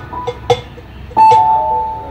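Electronic keyboard played live on stage: a few held single notes. A sharp tap comes about half a second in, and the loudest note is struck a little over a second in and slowly fades.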